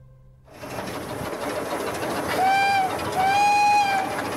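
Small narrow-gauge steam locomotive running along the track with a steady rushing, then sounding its steam whistle twice over it in the second half: a short blast, then a longer one.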